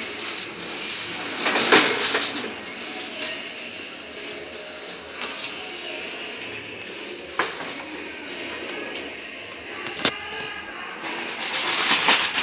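Aluminium foil crinkling and a disposable foil roasting pan being handled as a foil-covered ham is lifted out of an oven and carried, with a few knocks and a sharp click about ten seconds in.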